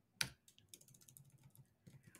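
Typing on a computer keyboard: one louder keystroke shortly after the start, then a run of faint, quick keystrokes.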